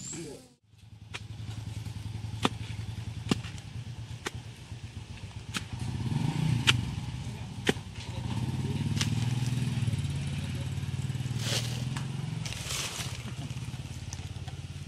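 A low engine hum runs steadily throughout, with sharp knocks and clicks at irregular intervals from a long blade stabbing into soil to dig a hole.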